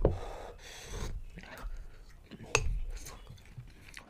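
Quiet breathing and mouth noises while eating spoonfuls of chocolate spread from a glass jar, with one sharp click about two and a half seconds in, a metal spoon knocking the jar.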